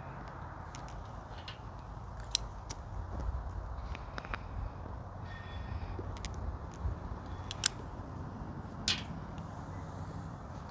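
A tobacco pipe being relit with a lighter: a few sharp clicks and soft puffing over a faint low background rumble.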